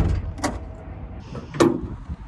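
Mechanical clicks and a clunk from handling an old Porsche's fittings: a sharp click at the start, another about half a second in, and a louder clunk with a short ring about one and a half seconds in.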